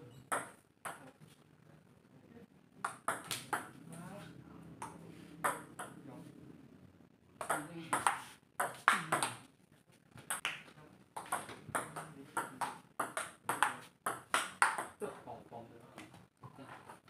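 A table tennis rally: quick runs of sharp clicks as the ball is struck by the paddles and bounces on the table, with short pauses between rallies.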